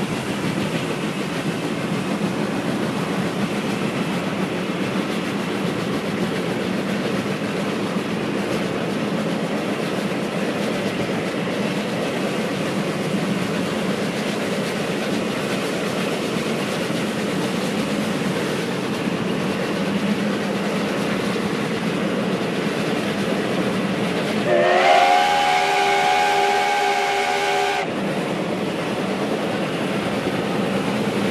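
JNR Class C62 steam locomotive train running with a steady noise, played back from a 1971 vinyl recording. Near the end its steam whistle sounds once for about three seconds: a chord of several notes that slides up as it opens, then holds and cuts off.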